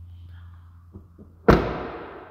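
A pickup truck's crew-cab rear door being shut: one loud slam about one and a half seconds in, echoing away over about a second, with a couple of small clicks just before it.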